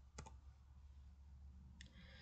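Near silence with a faint low hum, broken by two short, faint double clicks: one about a quarter second in and one near the end.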